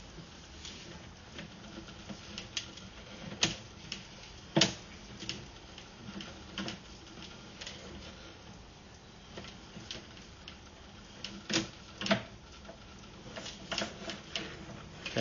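Irregular light clicks and knocks as a sewer inspection camera's push cable is pulled back through the pipe and out of the clean-out, with a few louder knocks among them.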